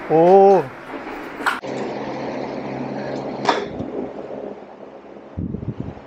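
Electric fans humming steadily, loud enough to spoil the recording. A voice calls out a drawn-out "oh~" at the start, and two sharp clicks come about two seconds apart, typical of golf balls being struck off the mat.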